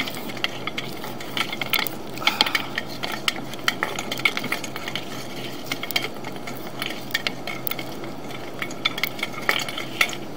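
Sewer inspection camera being pushed slowly along a pipe: irregular clicking and scraping from the push cable and camera head over a steady hiss.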